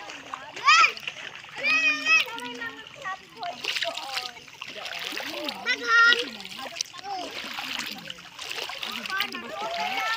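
Bare feet wading and splashing through ankle-deep seawater, with high-pitched voices calling out in short bursts about a second in, around two seconds and around six seconds.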